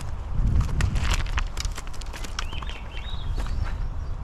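Footsteps on loose river cobbles, the stones clacking and crunching underfoot in quick irregular clicks, thickest in the first second and a half.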